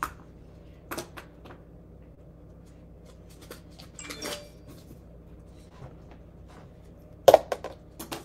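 Scattered light clicks and knocks of small objects being handled, with a short clatter about four seconds in and a louder cluster of knocks near the end, over a low steady hum.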